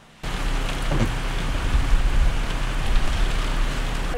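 Heavy rain from Hurricane Fiona falling steadily on flooded ground. It starts abruptly about a quarter second in, with a deep rumble underneath.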